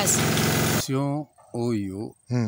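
People talking: a voice over a steady hiss-like background noise that cuts off suddenly just under a second in, followed by short phrases of a lower-pitched voice with a quiet background.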